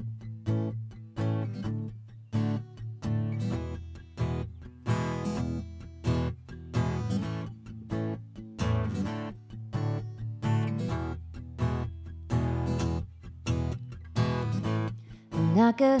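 Solo acoustic guitar playing a song's intro, chords struck at a steady rhythm of about two strokes a second. A woman's singing voice comes in at the very end.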